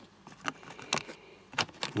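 A few light clicks and taps of a clear plastic ant container being handled, four or five short sharp ticks spread over two seconds.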